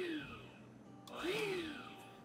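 Electric stand mixer pulsed twice: the motor spins up and winds down in two short bursts about a second apart, working flour into the creamed butter in short strokes.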